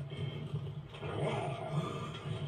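Giant cartoon monster truck's engine rumbling low and unevenly at idle, heard through a TV's speakers.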